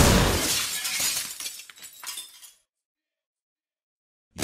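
A sudden crash-like sound effect as the hip-hop beat cuts off, its scattered clinks fading out over about two and a half seconds, followed by dead silence.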